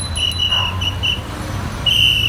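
A shrill whistle blown in four quick short blasts, over a steady low rumble of road noise.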